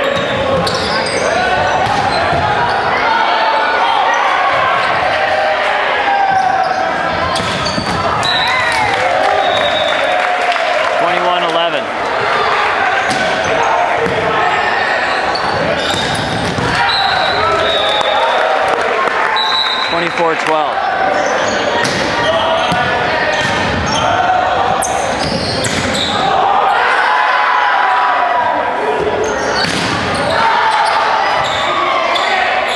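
Voices of players and spectators echoing in a gym hall, with sharp smacks of volleyball hits and a few short, high sneaker squeaks on the hardwood court.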